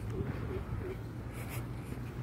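Outdoor ambience: a steady low rumble, with a few short, soft bird calls in the first second and a brief scuffing noise about a second and a half in.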